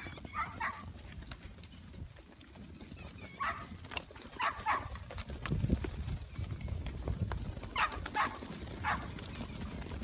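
A large flock of sheep moving over dry dirt: a continuous patter and rumble of many hooves, with several short bleats scattered through, clustered about half a second in, around four to five seconds, and around eight to nine seconds.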